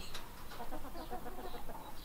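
Appenzeller Barthuhn (Appenzell bearded) chickens clucking quietly and irregularly.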